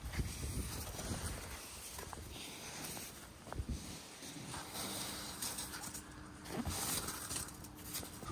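A bare hand sweeping wet snow off a car's windshield glass: soft brushing and scraping with a few light knocks, fairly quiet. A faint steady hum comes in about halfway through.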